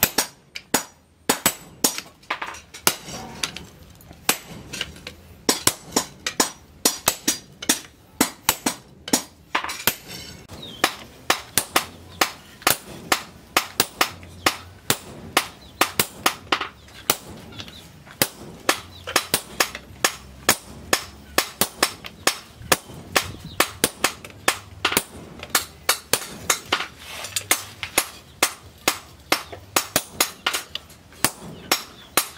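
Sledgehammer blows ringing on a handled top tool held against red-hot steel on the anvil, metal on metal, in a quick steady rhythm of about two to three strikes a second, with a brief pause about a second in, as a machete blank is forged from steel bar.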